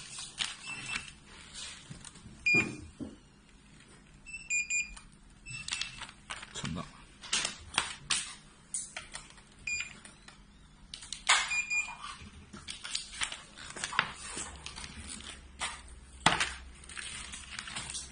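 Foil and plastic packaging bags crinkling and rustling as they are handled, with knocks and clicks as a handheld inkjet printer is pressed onto them. Several short, high electronic beeps come and go during the first twelve seconds.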